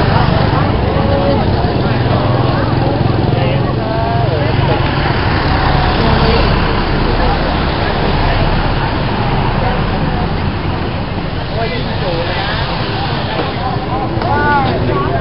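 Several people talking at once over a steady low rumble of road traffic.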